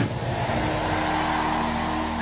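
Steady noise of a large congregation, many voices at once with no single voice standing out, over a few faint held tones.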